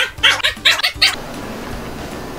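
A voice in a quick, even run of short, high syllables, about four a second, which cuts off about a second in, leaving a steady hiss.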